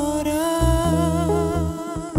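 Lead vocalist holding one long sung note with a slight vibrato, over a band with electric bass. The note eases off near the end.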